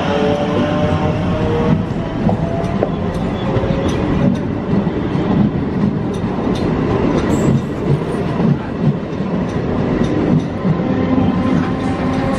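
A 16-car MEMU electric multiple unit accelerating past at close range: its wheels rumble steadily and click over the rail joints. The hum of its DC traction motors fades after a few seconds and rises again near the end as the next power car comes by.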